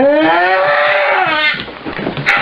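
A woman screaming during a hyperkinetic seizure: one long, loud cry that rises in pitch and then falls, lasting about a second and a half. It is an emotional ictal vocalisation, a feature of seizures arising from the most anterior part of the cingulate cortex.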